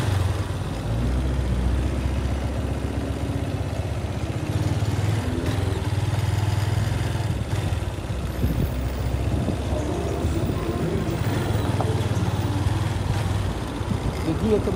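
Motorcycle engine running steadily as the bike is ridden, its low hum swelling and easing with the throttle.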